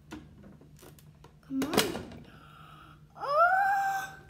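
Pie Face game's crank handle turned with faint clicks, then the spring-loaded hand snaps up with a loud clack about a second and a half in. Near the end a child lets out a high squeal that rises and then holds.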